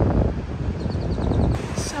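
Wind buffeting the microphone, a heavy low rumble, with the sound changing abruptly about one and a half seconds in.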